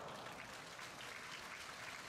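Faint, even background hiss with no distinct events.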